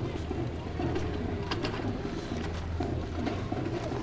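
Street ambience with a steady low hum and faint distant voices, without any sharp sounds.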